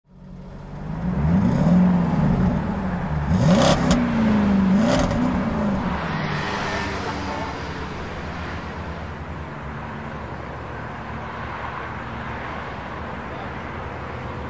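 Night street ambience: loud voices and a vehicle over the first few seconds, with two sharp sounds among them, then a steady hum of traffic and crowd.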